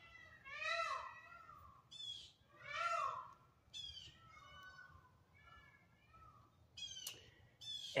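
An animal calling about five times, each call a short cry that rises and then falls in pitch; the two calls about one and three seconds in are the loudest.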